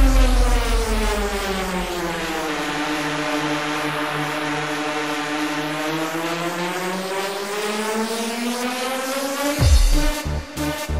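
Electronic dance track in a breakdown: the beat drops out and a sustained, buzzy synth tone slides slowly down in pitch, then climbs back up, swelling just before the end.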